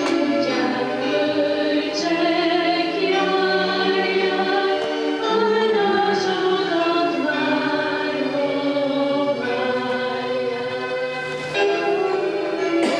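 A choir singing held chords that change every second or two.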